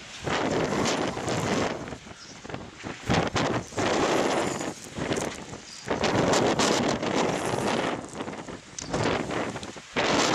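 Gusty wind buffeting the microphone, swelling and cutting out abruptly in irregular gusts every second or two.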